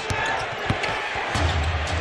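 Basketball arena crowd noise with a few sharp bounces of the ball on the hardwood court; a low, pulsing bass from the arena's music comes in about a second and a half in.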